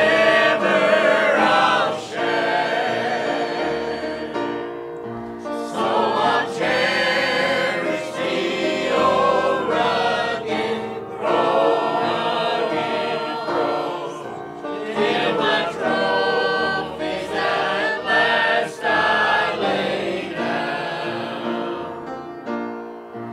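Church choir of mixed men's and women's voices singing a hymn, in sung phrases with short breaks between them.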